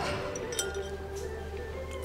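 Soft background music with steady held tones, and a few faint, light clinks.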